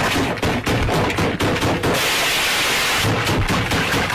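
Rapid, loud smashing blows of a stick into a heap of food, several a second, broken by about a second of hissing crash in the middle.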